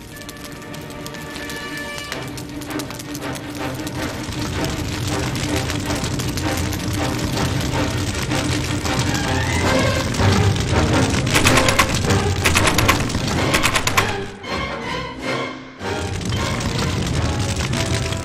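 Background music, joined about ten seconds in by a run of rapid knocking on a door, which is a rabbit banging on it to wake the sleepers.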